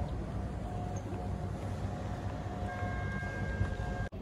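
Outdoor lakeside ambience dominated by wind rumbling on the microphone, with a faint steady hum. About two-thirds in, a couple of higher steady tones join it.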